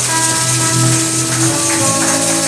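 Live church band music: sustained keyboard chords with a tambourine shaken steadily over them, the chord changing about a second and a half in.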